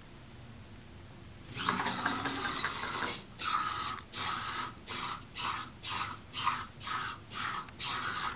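Small wheeled robot's servo drive motors whining: a steady run of about a second and a half, then short bursts about twice a second as the robot drives in stop-and-go moves while using its ping sensor.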